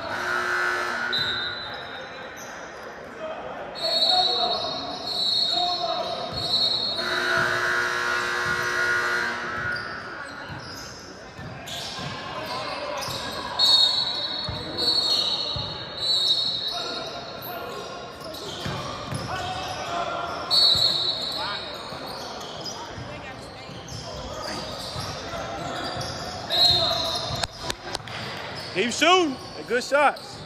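Basketball game on a hardwood gym floor: the ball bouncing, sneakers squeaking, and players and spectators shouting, all echoing in the large hall.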